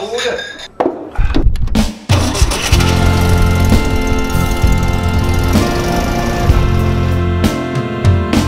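Vintage Volkswagen bus's air-cooled engine starting about a second in and then running steadily, with music coming in under it.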